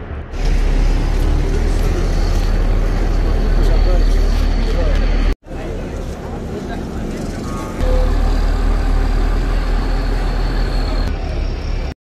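Busy road noise: passing vehicles and the voices of a crowd, over a heavy low rumble. The sound drops out abruptly for an instant about five seconds in, then the rumble comes back louder near eight seconds.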